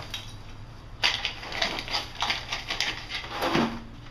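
Lumps of biochar charcoal clattering and crunching against each other and a plastic tub as a magnet in a plastic container is stirred through them, with nails clinking. The rattling starts about a second in and runs on as a dense, uneven clatter.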